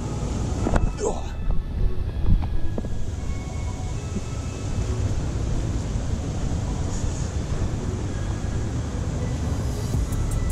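Footsteps and handling noise from a body-worn camera as the wearer walks along a dirt riverbank path: a steady low rumble with a few knocks in the first three seconds.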